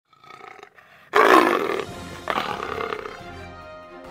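Short intro jingle with a big-cat roar sound effect that comes in suddenly and loudly about a second in, followed by a second, weaker burst before it fades.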